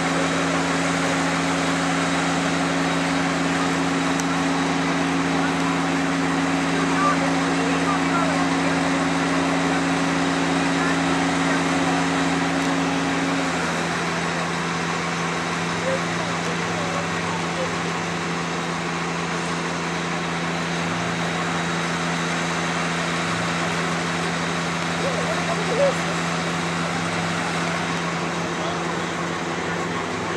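Steady low hum of idling engines, with two low tones held under it; the higher tone drops out about halfway through. Faint distant voices murmur underneath.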